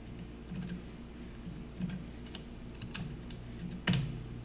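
Computer keyboard keystrokes: scattered, irregular clicks a few at a time, with a louder click near the end, over a faint steady low hum.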